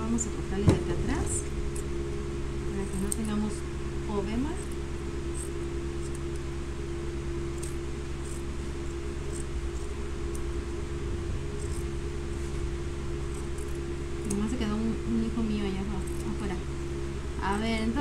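Electric fan running with a steady, even hum, under soft murmured voice and small handling sounds at the table; a sharp click about a second in.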